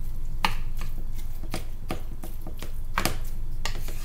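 Wooden spatula scraping and knocking against a frying pan as minced beef is stirred and broken up, in short strokes about three times a second.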